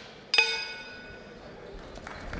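A ring bell struck once and ringing out in several tones that fade over about half a second: the signal to start the round.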